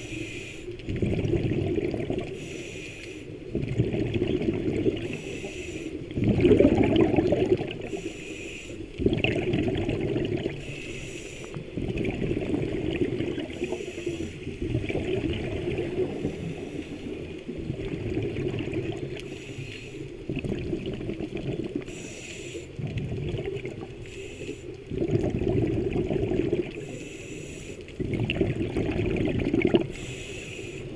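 Scuba diver breathing through a regulator underwater: a cycle of inhalation hiss and bubbling exhalation, repeating about every three seconds.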